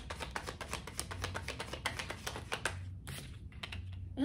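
A deck of tarot cards being shuffled by hand, the card edges making a fast run of light clicks that pauses briefly about three seconds in.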